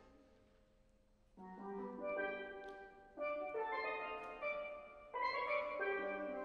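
Steel pan played with mallets: the ringing notes die away into a short pause, then new chords are struck about a second and a half in, again near three seconds and near five seconds, each ringing on.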